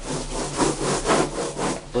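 Rhythmic hand scrubbing of the inside wall of a water storage tank, about two strokes a second, scouring off a coating of slime and algae. The strokes sound inside the enclosed tank.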